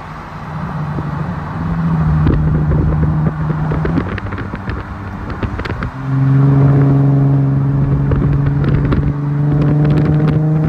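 Infiniti G37 sedan's V6 heard through an ISR single-exit exhaust with resonator and stock cats, from a car running alongside. A steady engine note while cruising; about six seconds in it gets much louder as the car pulls, the pitch slowly rising.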